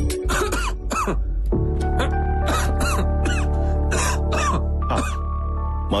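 Background music with a steady low drone, over which a man gives a string of short coughs and throat-clearing noises.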